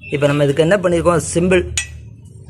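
A man's voice narrating, with one short, sharp metallic click near the end.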